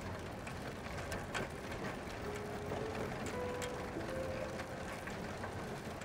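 Steady mechanical rattling and clicking of a moving rickshaw. Soft, held background music notes come in about two seconds in.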